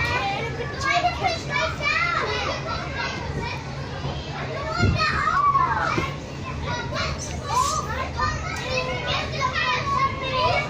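Children's voices at play: many overlapping high-pitched shouts and calls, with a steady low hum underneath.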